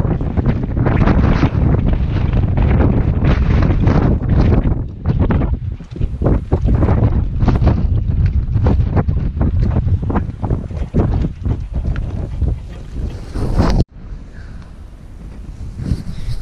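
Wind buffeting the camera's microphone, a loud, gusty rumble that drops suddenly to a softer rush about two seconds before the end.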